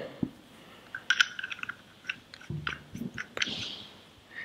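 Light clicks and handling noises as a small stainless-steel vaping atomizer is worked by hand, with a short low hum and a breath near the end.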